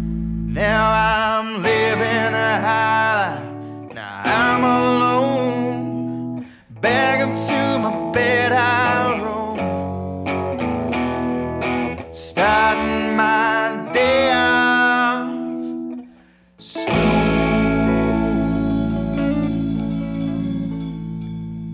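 Blues-rock band recording: a lead electric guitar plays phrases with bends and vibrato. The bass and low end drop out about a second in and the full band comes back in about three seconds before the end.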